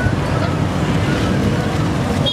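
Busy street noise: a steady rumble of road traffic with faint voices mixed in.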